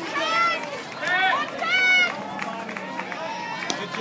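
People shouting and cheering at an outdoor softball game: three loud, high-pitched calls in the first two seconds, then quieter voices.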